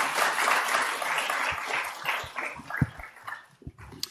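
Audience applauding, dying away about three seconds in, with a few low thumps near the end.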